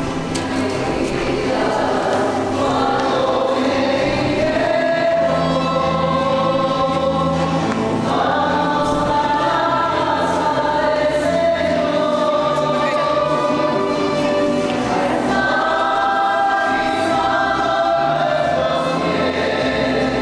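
A choir singing a slow sacred song, with long held notes throughout.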